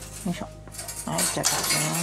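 Metal wire cat pen rattling and clanking, a clattering that starts about a second in.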